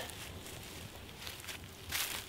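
Faint swishing and rustling from a solo double-stick weave drill: two kali sticks swung through the air while the feet shift on dry leaves, with a few soft ticks in the second half.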